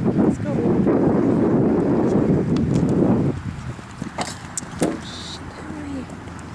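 Wind buffeting the camera microphone, a loud low rumble that drops away abruptly about three seconds in, followed by a few sharp knocks.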